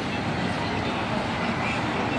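Steady traffic noise of cars driving along a city street.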